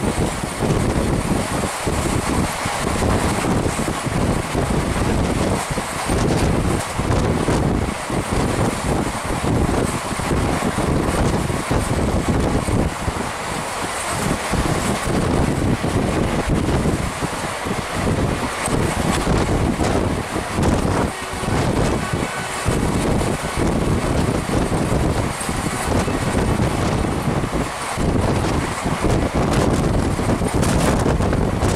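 Wind buffeting the microphone in irregular gusts from the open door of a fast-moving express train coach, over the train's steady running noise on the rails.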